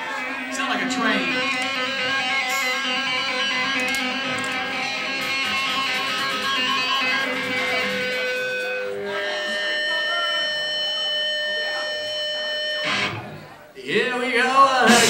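Electric guitar chords held and left ringing, heard through an audience recording of a live punk show. The chord changes about nine seconds in and cuts off about a second before the end, ahead of the song proper.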